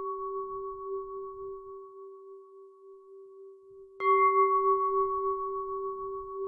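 A struck bowl bell ringing with a long, slowly fading tone that wavers as it dies away, struck again about four seconds in and ringing on.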